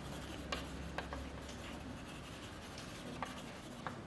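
Chalk writing on a blackboard: faint scratching broken by about five short, sharp taps as the chalk strikes the board.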